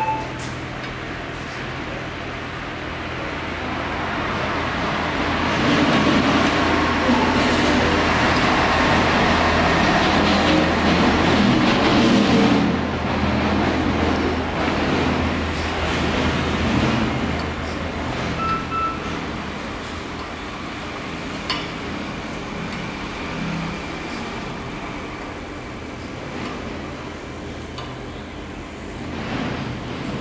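TIG (argon) welding arc hissing steadily as filler rod is fed into the weld, over a steady low hum. The hiss swells louder for several seconds in the middle, then eases back.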